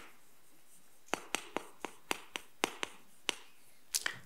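Chalk writing on a chalkboard: a quick series of about ten sharp taps and short strokes, starting about a second in and stopping shortly before the end.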